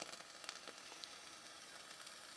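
Faint, steady sizzle from the coils of a rebuildable dripping atomizer fired on a mechanical mod, as the e-liquid in the freshly saturated cotton wicks boils off into vapor. The coils are a 0.11-ohm build of fused Clapton nichrome and stainless steel wire.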